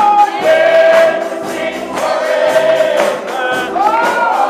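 Gospel music: a choir singing long held notes over percussion keeping a steady beat.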